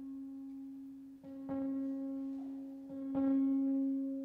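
Live microtonal guitar music: a steady held drone tone under two plucked guitar notes, struck about a second and a half and three seconds in, each ringing on.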